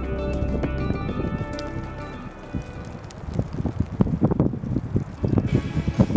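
Film soundtrack music: sustained tones that fade out over the first few seconds, then a run of irregular low thumps that grows denser toward the end.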